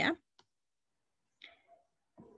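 The tail of a woman's spoken word, then a single short click and near silence, with a faint brief sound near the end.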